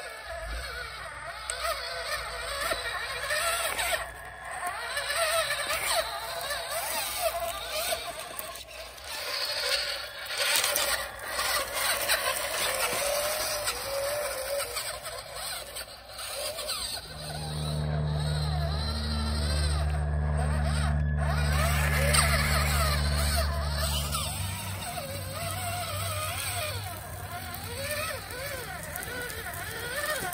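Small RC truck's electric drive motor and gears whining, the pitch rising and falling as the throttle changes while it drives over dirt and leaf litter.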